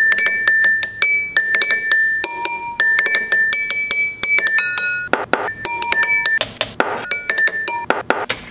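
Unglazed ceramic cups struck in quick succession with wooden sticks. Each hit is a short clink that rings at the cup's own pitch, so several cups give different notes in a beat-like rhythm. A couple of duller, noisier strokes come about five and seven seconds in.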